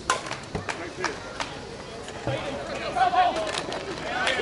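Slowpitch softball bat striking the ball with a sharp crack at the start, followed by a few lighter clicks. Players and spectators shout and call out from about three seconds in.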